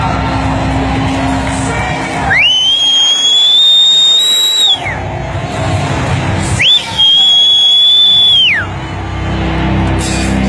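Live rock band music broken by two long, piercing high tones, each sliding up, holding for about two seconds and diving down again, while the rest of the band drops out beneath them.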